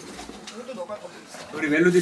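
A man's voice calling out short, playful exclamations in Korean, loudest near the end.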